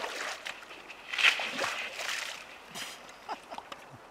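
Hooked whitefish splashing and thrashing at the water's surface near the shelf-ice edge. The splashing is loudest in a burst about a second in and dies away after a couple of seconds.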